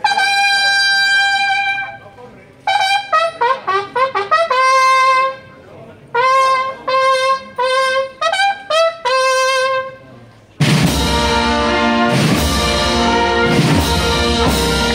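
A trumpet call: one long held note, then a fanfare of short, repeated notes. About ten and a half seconds in, the full wind band comes in loudly with a processional march.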